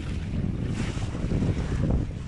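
Wind buffeting the microphone: a heavy, uneven rumble.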